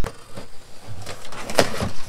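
A blade slitting the packing tape on a cardboard box, then the cardboard lid being pulled open with scraping and rustling of the cardboard, loudest about a second and a half in.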